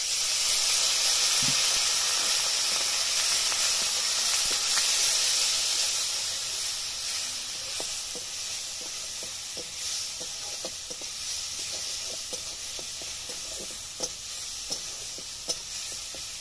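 Water poured into a hot kadai of frying onions and ground spices sets off a loud sizzle and steam hiss, strongest for the first few seconds and then slowly fading. Later the spatula scrapes and taps against the pan as the masala is stirred.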